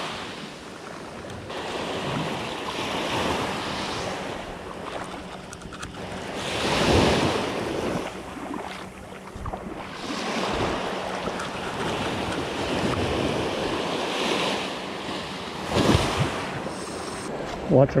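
Small surf breaking and washing up a sand beach, swelling louder about 7 seconds in and again near 16 seconds, with wind buffeting the microphone.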